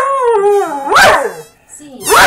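Dog howling: a long note that starts loud and slides down in pitch, then a second shorter note that rises and falls about a second in, dying away shortly before the end.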